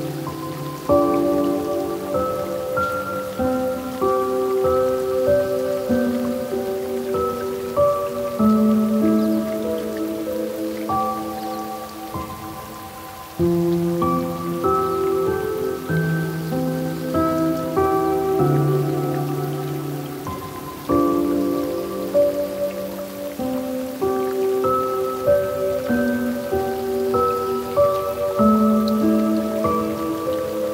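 Slow, gentle solo piano music, new phrases starting about a second in, near the middle and about two-thirds through, over a faint steady hiss of water.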